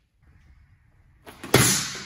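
Near silence, then a sudden loud burst of noise about one and a half seconds in that fades away over most of a second.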